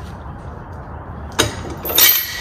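Metal chain and hitch hardware clinking: a sharp clink about one and a half seconds in and a louder clank with a brief ring at the end, as a weight distribution hitch's spring bar chain is handled. A low steady rumble sits underneath.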